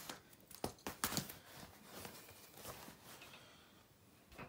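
Handling noise from a leather-strapped replica championship belt with metal plates being turned over on a blanket: a few sharp clicks and knocks in the first second or so, then quieter rustling.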